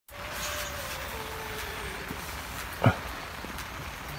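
Steady hiss of rain on a bivvy's fabric canopy, with a faint hum sliding down in pitch in the first half and one short, sharp sound about three seconds in.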